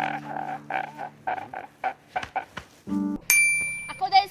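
A man sobbing and wailing in short broken cries, then near the end a short low tone followed by a bright, bell-like ding sound effect that rings on.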